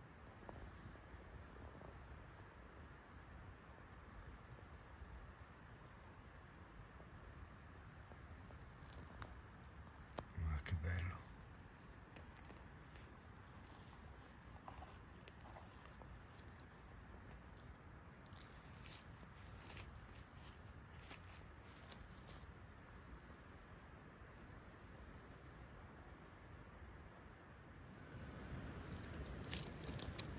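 Faint rustling and scattered small crackles of forest-floor litter as someone moves about and handles things among the trees. A short, louder low sound comes about ten seconds in.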